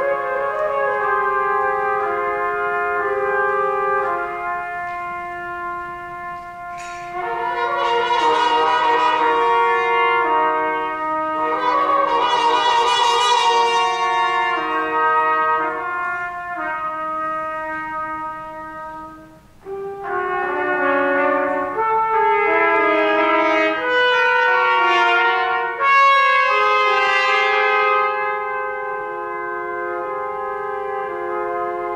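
Trio of trumpets playing a contemporary concert piece: held, overlapping notes form shifting chords, swelling louder twice with wavering notes. After a brief pause about twenty seconds in, the three play busier, quickly changing notes.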